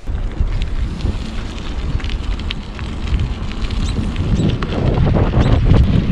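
Wind buffeting the microphone of a camera on a moving bicycle: a steady low rumble that starts suddenly and grows louder near the end.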